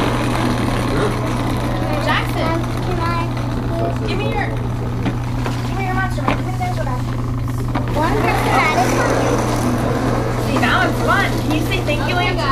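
Overlapping chatter of small children and adults, with high children's voices rising and falling throughout, over a steady low hum.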